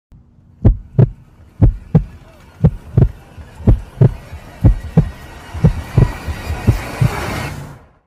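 Heartbeat sound effect: deep double thumps, lub-dub, about once a second, seven beats in all. A hiss swells up over the last two seconds and cuts off suddenly just before the end.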